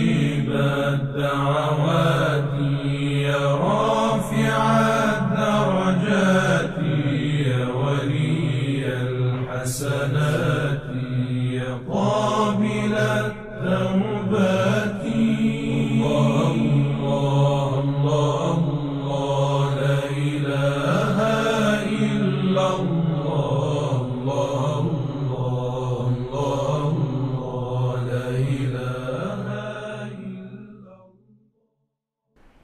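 Islamic devotional chant: a voice sings long melodic phrases over a steady low drone. It begins to fade out near the end.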